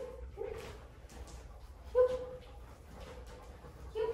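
Aussiedoodle dog whining: three short, high, steady-pitched whines, the loudest about two seconds in.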